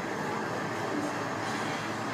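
Steady rushing outdoor ambience, as picked up by a handheld livestream phone on a city street, with no distinct events.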